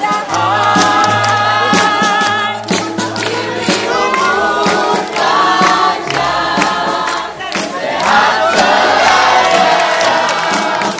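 A crowd singing together loudly over backing music with a steady bass line, with many hands clapping along.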